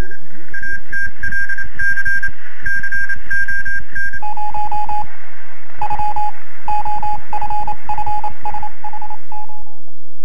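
Electronic title sting of rapidly repeated beeps over a fast low pulse: a high beep pattern for about four seconds, then a lower-pitched beep pattern that stops just before the end.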